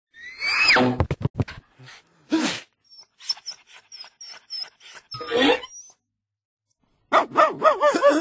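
A dog vocalizing in short bursts, ending in a rapid run of barks. Near the start there is a falling pitched glide and a quick run of clicks.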